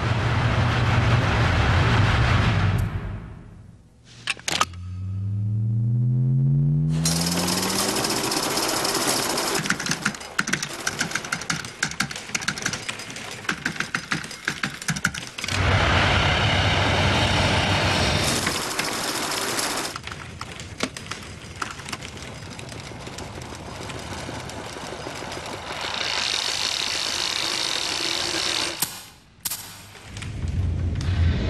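Film-trailer soundtrack of layered sound effects and music: a dense rush of noise, a pitched tone rising sharply about five seconds in, then long stretches of rapid clattering.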